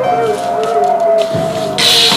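A man's voice holding one long, wavering sung note. A loud burst of hissing noise comes near the end.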